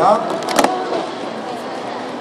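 Plastic sport-stacking cups clattering in a quick burst of clicks about half a second in as three cup pyramids are downstacked, then steady hall noise.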